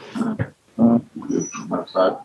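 A man laughing in several short bursts.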